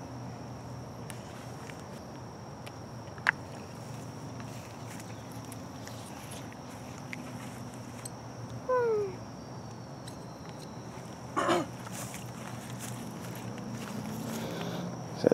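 Trayer Wilderness Multi-Flame Tool fire piston being struck and drawn to light chaga tinder. There is a sharp click about three seconds in, a loud short squeal falling in pitch near nine seconds, and another short burst about eleven and a half seconds in, over a steady high insect trill.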